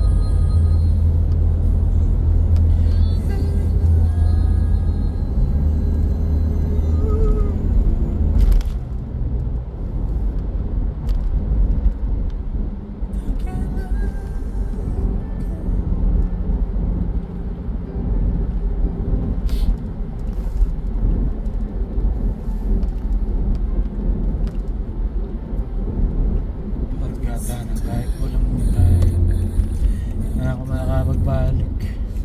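Steady low road and engine rumble inside a moving car's cabin, with two brief knocks, about a third and two thirds of the way through.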